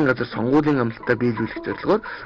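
Speech only: a narrator's voice talking.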